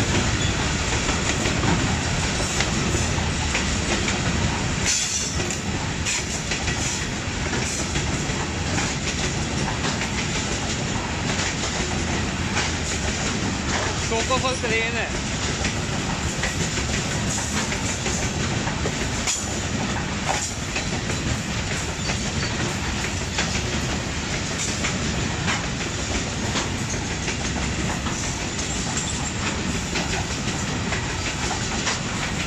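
Freight train of coal hopper wagons rolling steadily past at close range: a continuous rumble with the wheels clicking over the rail joints.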